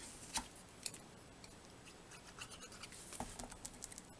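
Faint scratching and light clicks of cardstock cut-outs being handled and slid on a tabletop, with a couple of sharper clicks in the first second and a run of small ticks after the middle.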